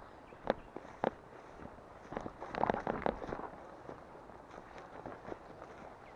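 Footsteps through grass and dry brush, with twigs and dry leaves crackling and snapping underfoot: two sharp snaps in the first second, then a louder spell of crackling around the middle.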